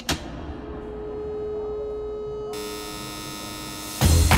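A sharp hit right at the start, then a held synthesized drone that changes into a sustained chord about two and a half seconds in: an intro sound effect leading into music.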